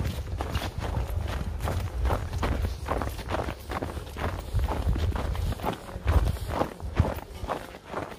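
Footsteps crunching and squeaking in deep, packed snow at a steady walking pace, about two to three steps a second, over a low steady rumble.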